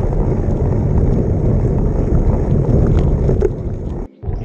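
Wind buffeting a handlebar-mounted camera's microphone, over tyre and road rumble from a bicycle riding fast on a paved road, with a few light rattles.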